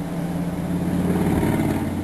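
A low, engine-like rumble that swells to a peak about one and a half seconds in and then eases a little, over a steady low hum.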